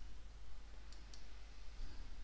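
Two faint computer mouse clicks close together about a second in, the mouse selecting an item on screen, over a steady low background hum.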